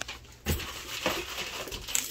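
A dull thump about half a second in, then crinkling and rustling of a cigar's cellophane wrapper as it is handled.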